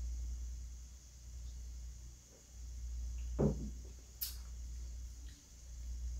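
Quiet room with a steady low electrical hum. A brief low vocal 'mm' falls in pitch about three and a half seconds in, and a light sharp click follows under a second later.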